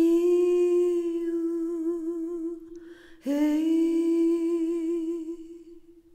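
A woman's voice humming a cappella: two long held notes on the same pitch, each with gentle vibrato and slowly fading, with a short pause between them about three seconds in.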